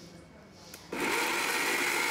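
Electric mixer grinder switched on about a second in, its motor and blades running steadily with a high tone as they grind soaked rice, chana dal and green chillies into a wet paste.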